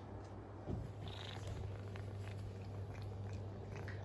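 An elderly cat at its cat food, quiet small ticks of eating over a steady low hum, with a brief scratchy sound about a second in.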